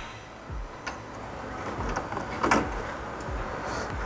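Faint handling sounds of metal parts: a few light clicks and knocks as rod ends are screwed onto a splitter tie rod by hand, the clearest about two and a half seconds in.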